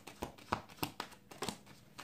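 A deck of tarot cards being shuffled by hand: a quick, irregular series of soft card snaps and flicks.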